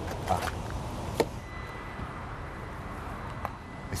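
A few short sharp clicks, the sharpest about a second in, over a steady low rumble: a CCS fast-charging plug being pushed and latched into an electric car's charging socket.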